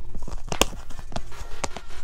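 A red collapsible camping mug being squeezed and pressed flat in the hands: a string of clicks and knocks, the sharpest a little over half a second in.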